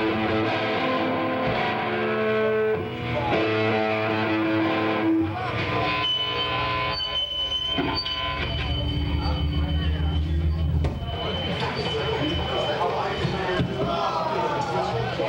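Electric guitar and bass ringing out on held notes through the amplifiers, with a steady high feedback tone from about six seconds in and low bass notes droning near the middle, as a live rock band lets a song die away.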